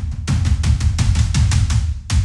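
Colossal Hybrid Drums' sampled Mega Tom Ensemble played as a fast run of hits, about seven a second, deep and heavy. The Hype control is turned up high, adding an intense scoop for a mega-hyped sound.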